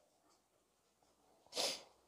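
A single short sniff from a person, about a second and a half in, against near silence.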